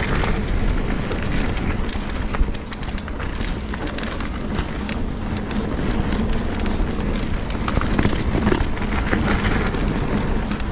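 Sonder Evol GX mountain bike riding along a dirt trail: tyres rolling and crackling over the ground while the bike rattles with many small clicks. A sharp knock comes about two and a half seconds in.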